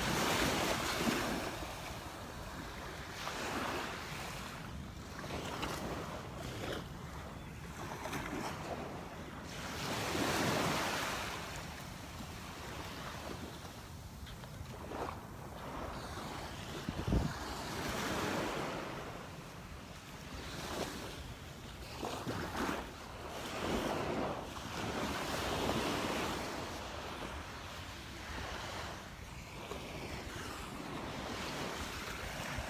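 Small Gulf waves washing up and breaking on the sand, swelling and fading every few seconds, with wind on the microphone. A single sharp knock about halfway through.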